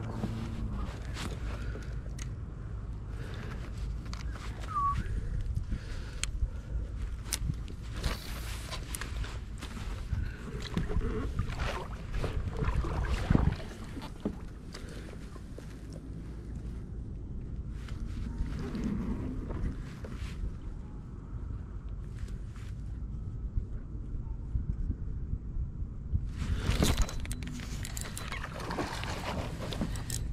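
Steady low rumble of wind on the microphone over a kayak on the water, with scattered clicks and knocks from handling a fishing rod and reel. A louder rush of noise comes near the end.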